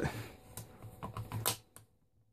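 Metal mid-cap magazine being rocked into the magwell of a Tippmann M4 airsoft rifle: a handful of light clicks and knocks in the first second and a half as it scrapes against a stiff magazine catch that will not let it seat easily, which the owner takes for an unworn catch.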